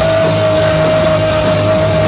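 Live rock band playing loud with distorted electric guitars and drums, a single high note held steady for about two seconds over the band.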